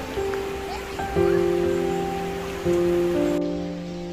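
Slow, gentle instrumental background music with long held notes, over the steady rush of a shallow river that cuts out near the end.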